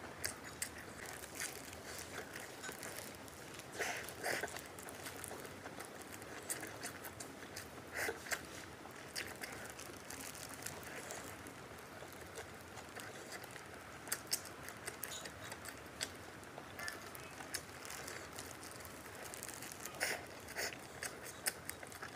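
Eating a shaobing flatbread sandwich filled with egg, sausage and pork tenderloin: chewing and biting, with irregular crisp clicks and crunches and a few louder bites spread through.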